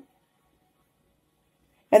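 Near silence: a pause in a woman's speech, with her voice resuming right at the end.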